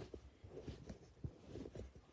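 Faint handling sounds: a few soft, dull knocks and light rustling as a paper catalogue is shifted about on a desk.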